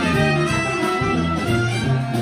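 Traditional New Orleans-style brass band playing live: trumpets, trombone and saxophone playing together over sousaphone bass and drum kit.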